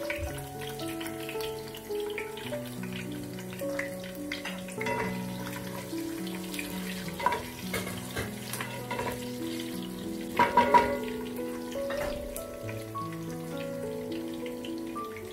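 Dried red chillies, curry leaves, garlic and fennel seeds sizzling in hot coconut oil in a pan, stirred with a wooden spatula, with a few sharp clatters, the loudest about ten and a half seconds in. Background music of slow held notes plays under it.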